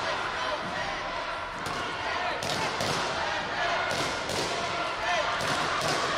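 Scattered sharp thuds and slaps echo through a large sports hall over a murmur of distant voices.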